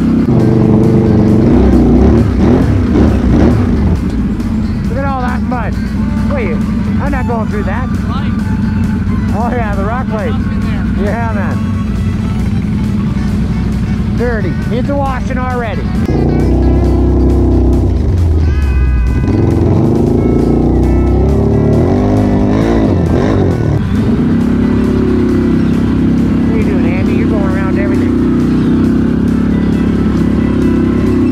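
Can-Am Renegade XMR 1000R ATV's V-twin engine running along a trail, with a music track carrying a singing voice over it. The engine runs steadily, and its sound changes about halfway through.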